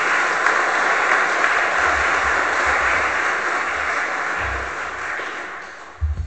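Audience applauding, a steady mass of clapping that dies away near the end.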